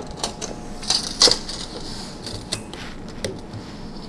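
Retractable tape measure being handled on a bench top: scattered clicks and light knocks, with a brief rasp about a second in.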